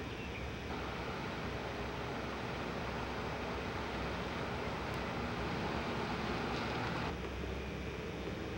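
Steady outdoor background noise picked up by a camcorder's microphone, a shade louder from about a second in until about seven seconds in.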